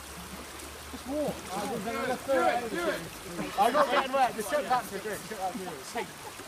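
Shallow river water rushing over a stony bed as a steady hiss, with several voices talking over it from about a second in.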